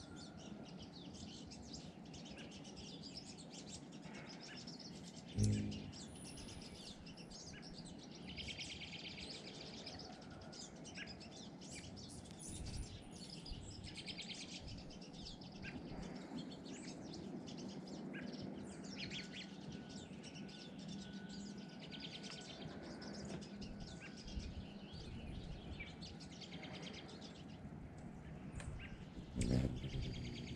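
Background birdsong: many short, overlapping chirps and calls from wild birds throughout, with one brief low thump about five seconds in.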